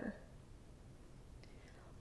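A pause in a woman's reading aloud: her last word trails off at the very start, then faint room tone with a low hum until she speaks again.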